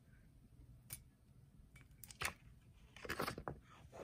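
Faint scattered clicks, then a short cluster of paper rustling about three seconds in: sublimation transfer paper and heat tape being peeled off a freshly pressed mug.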